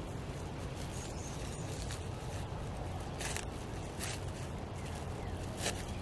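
Plastic wrap crinkling in several short, faint crackles as it is peeled off a skein of dyed wool yarn, over a steady low background hum.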